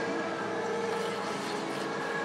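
Steady hum of an indoor ice rink, with a constant low tone running through it and no distinct sudden sounds.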